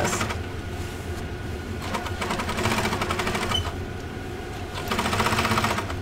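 Electric sewing machine stitching hand-spun yarn down onto fabric (couching), its needle running in a rapid, even patter, with louder spells around two seconds in and near the end.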